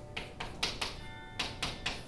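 Chalk tapping and scratching on a chalkboard as short strokes and symbols are written: about seven quick strokes in two bursts, the second starting a little before halfway.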